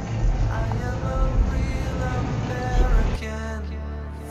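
Background music, loud and dense with a low beat, that cuts abruptly about three seconds in to a quieter, different passage.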